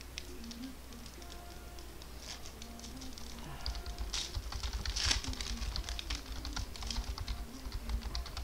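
2014 Panini Select Football card packs handled and opened by gloved hands: a rapid run of crinkles and clicks from the wrappers and cards, getting busier and louder about halfway through.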